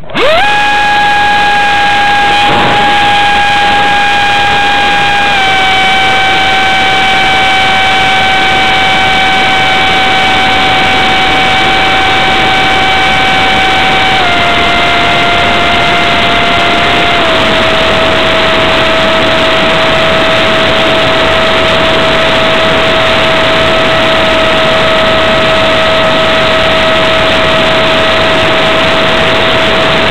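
Electric ducted fan of an EF-16 RC jet running hard, heard from a camera on board: a steady high whine over loud rushing noise. The whine rises quickly at the very start, then steps down slightly in pitch three times as the throttle is eased.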